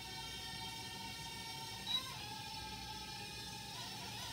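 Holy Stone HS190 mini quadcopter's four small propeller motors whining steadily at a high pitch as it hovers and spins in its high-speed rotation mode, the pitch briefly dipping and recovering about two seconds in.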